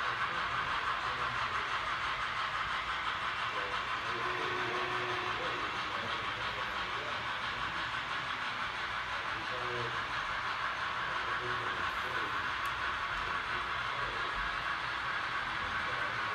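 Model train running on the layout track: a steady, even rolling noise without pause, with faint voices in the background.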